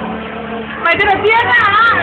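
A low steady hum for about the first second, then a high-pitched young voice calling out, its pitch rising and falling, from about a second in.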